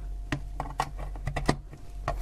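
Light plastic clicks and taps, about ten of them, as a USB extension cable's plug is pushed into the rear USB port of a plastic Wi-Fi router and the cable is handled. The sharpest click comes about one and a half seconds in.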